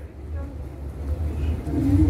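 A steady low rumble with faint, distant voices over it.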